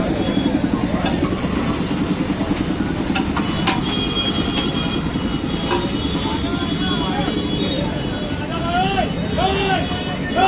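Busy street ambience: crowd chatter over a running vehicle engine, with a few sharp knocks. Near the end a voice calls out several times in rising-falling shouts.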